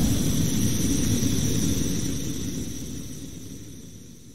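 Rumbling sound effect with a steady hiss over it, fading away evenly over a few seconds: the decaying tail of a cinematic logo-transition hit.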